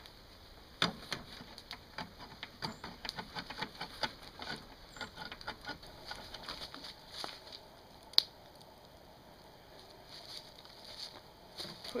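Hand-held can opener clicking in quick irregular ticks as it is cranked around the rim of a tin can, then a wood campfire crackling with one sharp pop about eight seconds in.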